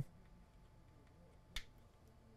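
A single sharp click about one and a half seconds in: the TriStar tester's cable plug seating in an iPhone's Lightning port. Otherwise near silence.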